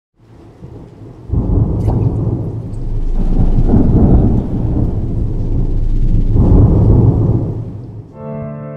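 Deep, rolling thunder-like rumble with a rain-like hiss on top, used as a logo-intro sound effect. It comes in suddenly about a second in, swells twice and fades out near the end.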